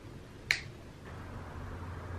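A single sharp snip about half a second in: pliers cutting off the excess end of a steel electric guitar string at the tuning peg.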